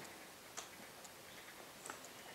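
Near silence: room tone with two faint clicks, one about half a second in and one near the end.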